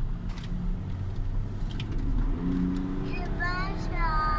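Car engine and road rumble heard from inside the cabin while driving on the track. The engine note is steady and then steps up in pitch about halfway through.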